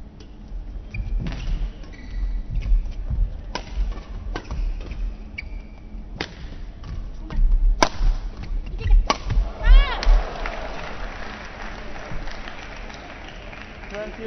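A badminton rally: about six sharp cracks of rackets striking the shuttlecock over the first nine seconds, with heavy thuds of players' feet on the court. A spread of crowd noise follows after the last strike, as the rally ends.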